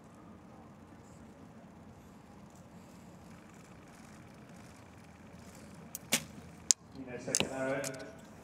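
A recurve bow shot: a sharp snap as the string is released about six seconds in, then a louder crack about half a second later as the arrow strikes the target. Before the shot only quiet background noise; voices follow near the end.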